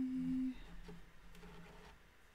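A woman humming a steady low "mmm" on one held note that stops about half a second in, followed by a few faint ticks from handling the yarn and tools.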